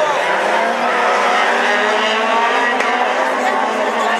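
A pack of rallycross hatchbacks racing past together, several engines held at high revs at once, their pitches overlapping and shifting slightly.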